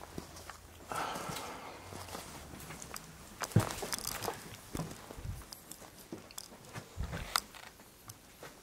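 Slow footsteps over a debris-strewn floor: irregular crunches, scuffs and knocks, with a brief rustle about a second in.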